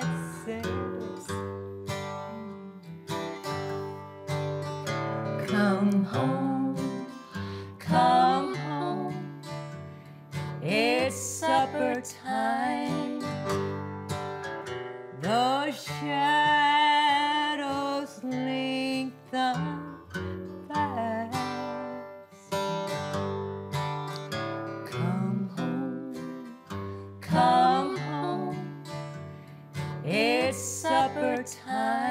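Acoustic guitar strummed and picked, accompanying a singing voice on a hymn melody, with a long wavering held note about sixteen seconds in.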